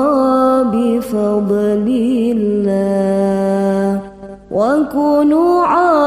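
Arabic sholawat, an Islamic devotional song, sung in melismatic turns with a long held note. The voice breaks off briefly about four seconds in, then comes back in with a rising phrase.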